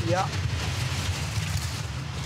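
Four-man bobsleigh running down the ice track at about 115–120 km/h: a steady low rumble under an even hiss of the runners on the ice.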